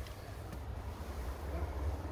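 Low, steady rumble with a faint hiss behind it and no distinct event.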